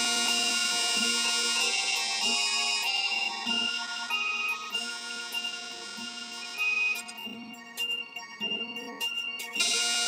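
A four-bar loop cut from a song playing back, transposed up one whole octave with its timing unchanged, so it sounds high-pitched. The loop starts over near the end.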